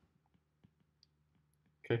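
Faint ticks of a stylus tip on a tablet's glass screen during handwriting, with one slightly louder tick about two-thirds of a second in.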